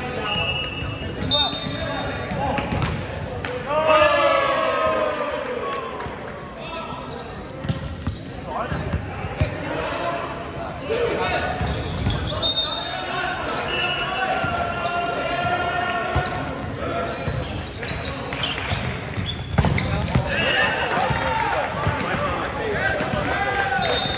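Volleyball being played in a large gym hall: players shout and call to each other, with sharp knocks of the ball being struck and bouncing on the hardwood floor, and short sneaker squeaks, all echoing in the hall.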